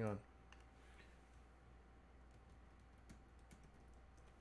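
Faint computer keyboard taps and mouse clicks, a handful of scattered clicks spread over a few seconds, over a faint steady hum.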